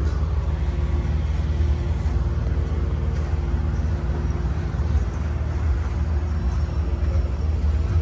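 An engine running steadily at an even speed, a constant low throbbing hum with no change in pitch.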